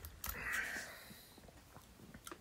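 A man drinking from an aluminium energy-drink can: the sip ends with a breathy exhale lasting about a second, then a few faint small clicks as the can is lowered.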